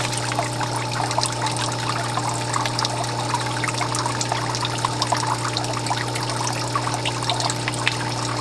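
Water pouring in a steady stream from a PVC pipe outlet into an aquaponics fish tank, with a steady low hum beneath it.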